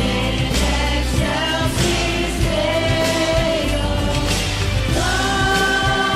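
Worship music: a choir singing held notes over a band with a steady bass line and beat.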